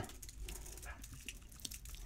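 Faint, scattered small clicks and taps of metal lock parts being handled as a just-picked pin tumbler lock is taken apart.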